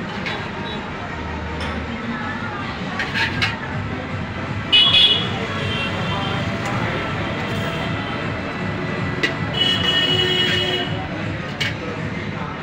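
Steel ladle scraping and clinking against an iron wok while fried rice is stirred and scooped, over steady street traffic noise and background voices. Vehicle horns sound about five seconds in and again for about a second around ten seconds.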